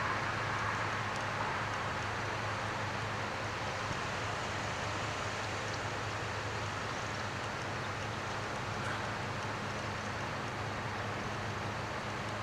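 Steady vehicle noise: a constant low engine hum under an even wash of road noise, with no distinct events.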